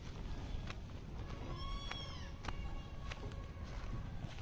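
A single short, high-pitched animal call that rises and falls in pitch, about a second and a half in, faint over low background noise with a few soft clicks.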